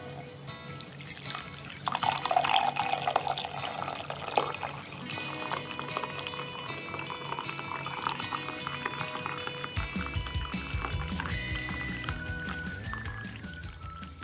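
Coffee pouring in a stream into a mug, a splashing liquid sound that gets louder about two seconds in, over background music.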